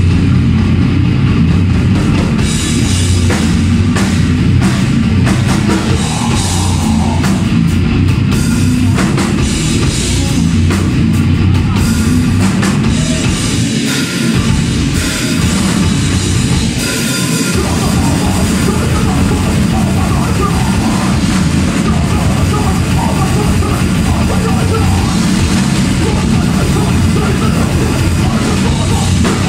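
Grindcore band playing live and loud: distorted bass and guitar, fast drums and shouted vocals, with two short breaks near the middle.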